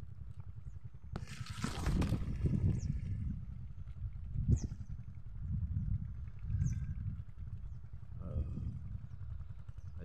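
Wind buffeting the phone's microphone as a low, uneven rumble, with a loud rustle of corn leaves brushing past the phone about a second in.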